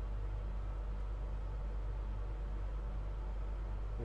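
Truma Aventa rooftop caravan air conditioner running in cooling mode off the inverter: a steady low hum under an even rush of fan air, with no change throughout.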